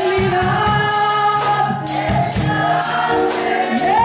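Gospel worship singing by a group of voices, with a tambourine keeping a steady beat about two to three strikes a second.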